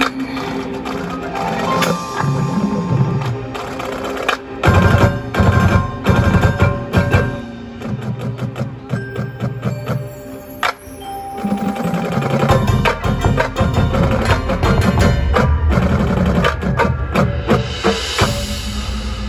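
Marching band playing its field show, with struck mallet-percussion notes from the front ensemble's marimbas and other keyboards and drum hits. The full band comes in louder about four and a half seconds in, drops back, and swells again from about twelve seconds on.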